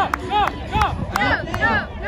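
Several voices shouting and cheering in short, rising-and-falling calls about every half second.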